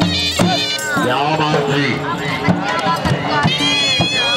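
Punjabi folk music: dhol drum strokes under a reedy, bending wind-instrument melody, with a voice over it.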